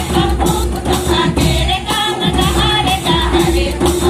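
Group singing of a tribal folk dance song, with regular percussion beats and a steady held note underneath.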